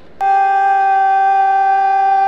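Bugle sounding one long, steady held note, beginning a moment in.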